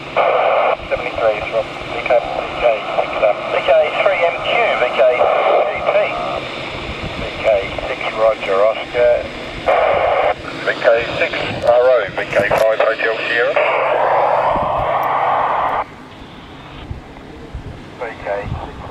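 Amateur radio operators' voices relayed through the AO91 FM satellite and heard on the FT-817 receiver's speaker, thin and narrow-toned like a radio, as stations call and exchange signal reports. About fourteen seconds in a rush of hiss takes over for a couple of seconds, then the signal drops lower.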